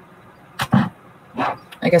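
A woman's voice: two short vocal sounds with a breathy edge, about half a second and a second and a half in, then speech starting near the end.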